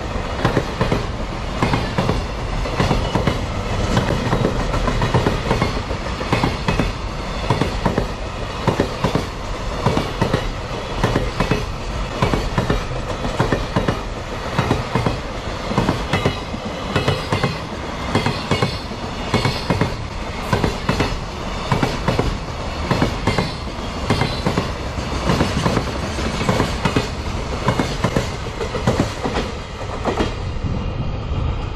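Container freight train wagons rolling past close by, their wheels clicking over the rail joints again and again under a steady rumble of wheel and rail noise. The sound drops a little near the end as the tail of the train draws away.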